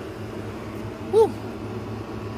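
A woman's short, rising-and-falling "woo" about a second in, over a steady low hum.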